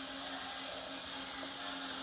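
Quiet room tone: a steady low hum over an even background hiss, with no distinct events.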